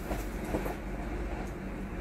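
Steady low background rumble with a faint hum, and a few faint clicks or rustles about half a second in.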